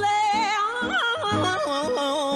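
A solo gospel singer's voice in ornamented runs, bending and sliding between notes with vibrato, over an instrumental accompaniment with pulsing bass notes.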